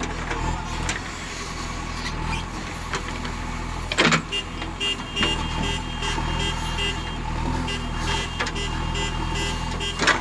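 Diesel engine of a JCB backhoe loader running steadily close by, with one sharp knock about four seconds in. A high beep repeats about twice a second through the second half.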